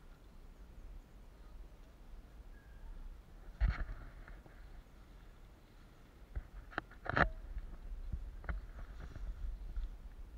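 A cross-country mountain bike passes close by on a dirt forest track: a few sharp knocks and clatters, the loudest about seven seconds in, over a low rumble of wind on the microphone.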